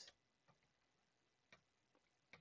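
Near silence: room tone with two faint clicks about a second apart, from working the computer while selecting and copying code.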